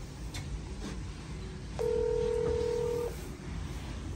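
Door-entry intercom keypad sounding one steady electronic call tone, held for just over a second, after its bell button is pressed.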